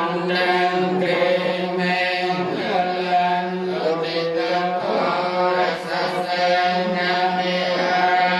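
A group of Theravada Buddhist monks chanting together in unison, many voices held on one steady, droning pitch.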